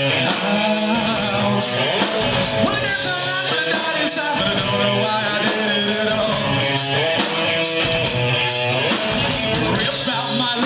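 Live rock band playing loudly: electric guitars, bass and drums with cymbal hits, and a singer's voice over them through the microphone.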